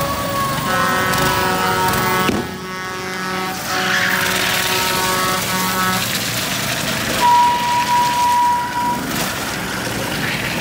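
Small gasoline engines of motorized drift trikes running as they go by. Over them a steady pitched horn-like tone sounds in several blasts through the first half, and a single high tone is held for about two seconds later on.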